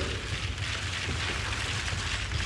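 A steady crackling hiss over a low hum, with no voices.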